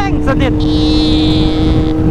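Kawasaki Z800's inline-four engine running at a steady cruising speed under heavy wind and road rumble. A hiss rises and fades in the middle.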